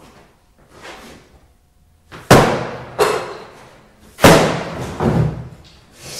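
Four heavy blows struck on an old upright piano with a sledgehammer, starting about two seconds in, the first and third the loudest, each dying away quickly.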